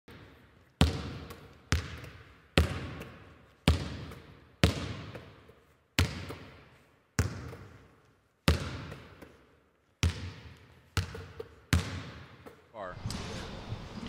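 A basketball bouncing on a hard court, about eleven single bounces roughly a second apart, each ringing out in a long echo.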